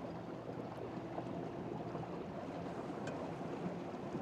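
Steady rush of water along a small boat's hull under way, with a faint low hum from the ePropulsion Navy 6.0 electric outboard running.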